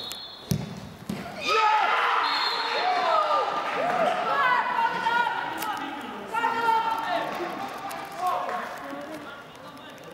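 A football struck with a single thud about half a second in, then players and onlookers shouting and cheering loudly for several seconds as the goal goes in, fading toward the end.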